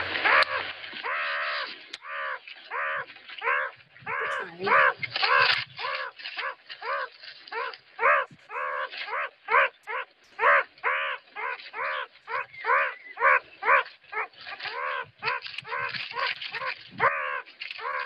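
Meerkat pup giving its continuous begging call: a rapid run of short, whiny calls, about two to three a second, the pup's steady call to adults for food.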